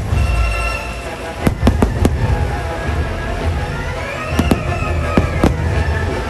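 Aerial firework shells bursting with sharp bangs: one at the start, a quick cluster of four about a second and a half in, and another run near the end, over the fireworks show's soundtrack music.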